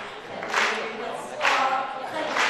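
A boy singing into a hand-held microphone, his voice carried over a sound system, in held notes broken about once a second by hissy consonants.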